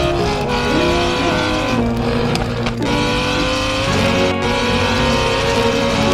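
Race-car engine sound effect revving, a stack of engine tones whose pitch climbs slowly over the last few seconds, with a short break a little under three seconds in.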